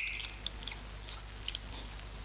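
Small handling noises from an analogue dial air gauge being unscrewed by hand from its metal regulator fitting: a sharp click with a brief squeak right at the start, then a few faint ticks.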